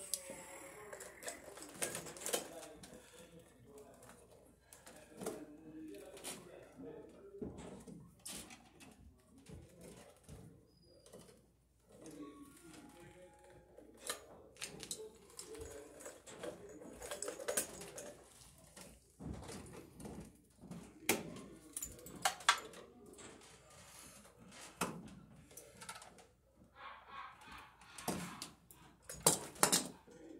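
Hands working electrical wires at an overhead metal junction box: irregular clicks and small knocks scattered throughout.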